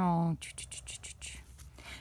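Faint scratching of a pen drawn across paper, tracing a straight line down the page.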